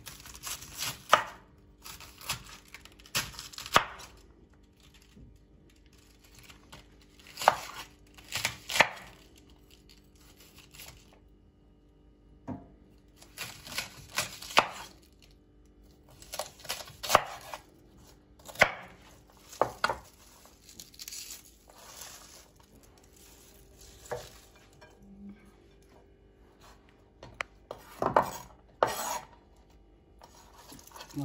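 Chef's knife slicing a head of white cabbage into strips on a wooden cutting board: runs of quick cuts, each ending in a knock of the blade on the board, with pauses between runs.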